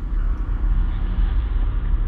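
Deep, steady spacecraft rumble: a cinematic sci-fi sound effect with a low drone and a hissing haze above it, from the music video's opening space scene.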